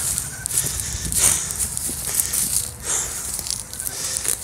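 Footsteps and rustling through dry grass as a person walks, a crackly, irregular noise with a few sharper steps, over a steady low rumble.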